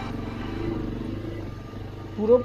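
Motorcycle engine running steadily while the bike is ridden along a dirt track.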